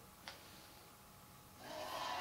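Near silence with one faint click. About one and a half seconds in, the concert stream's opening audio starts playing from the TV: a steady sound of several held tones that quickly grows louder.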